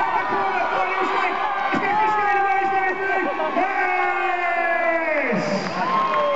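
Crowd cheering and shouting encouragement, many voices at once with long drawn-out yells; one held yell falls away about five seconds in.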